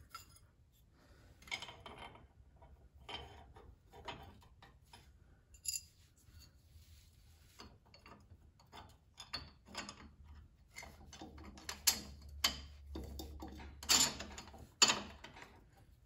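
Light metal clinks and rattles of sway bar mounting hardware (U-bolts, saddle bracket, nuts) being handled and fitted by hand at a truck's rear axle, irregular and scattered, with a few louder clanks near the end.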